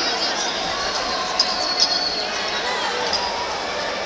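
Boxing arena crowd noise with spectators shouting throughout. Two sharp thuds of punches landing come about one and a half and two seconds in.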